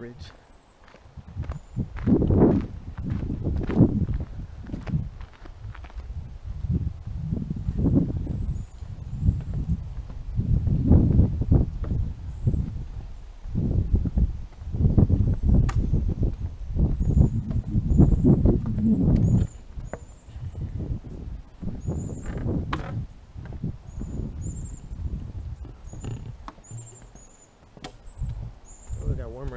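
Irregular low rumbling and knocking from a body-worn camera as its wearer walks along a trail and across a wooden footbridge, with a few short high chirps in the second half.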